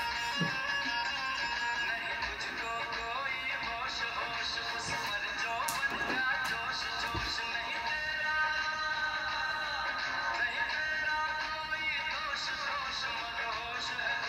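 Recorded song playing at a steady level, a voice singing over instruments.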